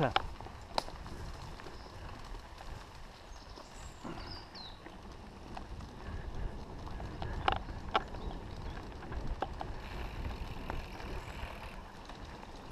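Mountain bike riding along a dirt trail, heard from a camera on the rider: a steady low rumble of tyres and wind, broken by sharp rattles and knocks as the bike goes over bumps, the loudest about seven and a half to eight seconds in.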